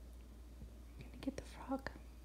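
Two short, soft vocal sounds about half a second apart, with a few small mouth clicks around them, starting a bit over a second in, over quiet room tone.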